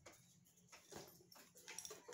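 Faint soft clicks of a tarot deck being shuffled by hand, with a few card taps about a second in and again near the end.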